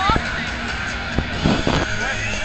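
Concert intro music over the PA with a cheering, shouting crowd, dense and noisy; a louder shout or screech rises out of it about a second and a half in.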